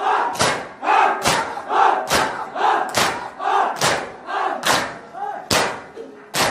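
A group of mourners chanting together in rhythm while beating their chests in matam, the Shia Muharram mourning practice, with a sharp slap about every 0.85 seconds, roughly seven in all.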